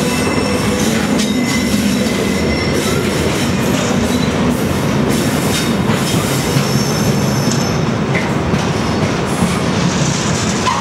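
Freight train rolling slowly past close by: a dead-in-tow Class 92 electric locomotive, then intermodal container wagons. There is a steady wheel-on-rail rumble with clattering over the rail joints and a few thin, high wheel squeals.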